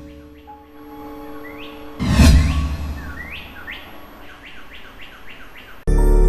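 TV channel ident sound effects: a deep impact hit about two seconds in, followed by a run of quick rising bird-like chirps, about three a second. Loud music cuts in suddenly right at the end.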